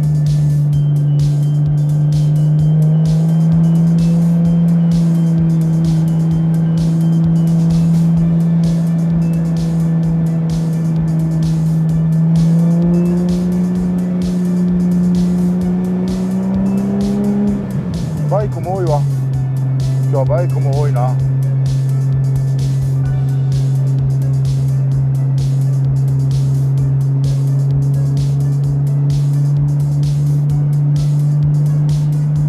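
Nissan Skyline GT-R (R33) RB26 twin-turbo straight-six heard from inside the cabin, droning steadily while cruising, its pitch slowly rising as the car gathers speed. About eighteen seconds in the pitch drops away as the driver shifts up, then holds steady and lower. Wind noise on the in-car camera mic runs underneath.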